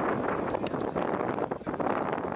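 Wind buffeting the camcorder microphone as a steady rushing noise, with faint, indistinct voices under it.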